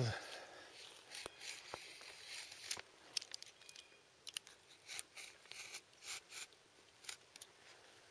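Knife blade scoring white birch bark, faint irregular scratches and small clicks as the bottom line of a bark-harvesting cut is scribed around the trunk.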